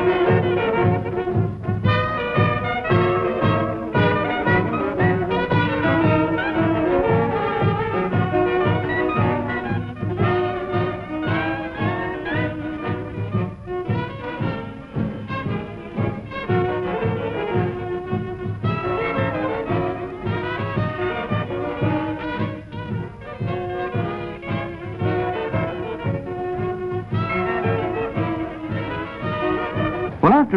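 Traditional jazz band playing, trumpet and trombone leading over a steady beat.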